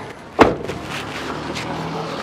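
A car door, the front door of a Maruti Suzuki Ertiga MPV, shut once with a single sharp slam under half a second in, over steady outdoor background noise.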